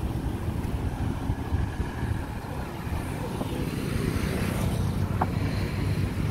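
Outdoor street noise: a steady low rumble of road traffic, with wind on the microphone. A couple of faint clicks come about five seconds in.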